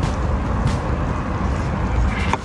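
Steady low rumble with a thin hiss over it: outdoor background noise.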